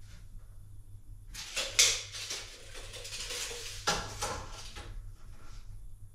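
Trim board being handled on a miter saw table: a scraping, rattling stretch of about three seconds with two sharp knocks, the louder one early on.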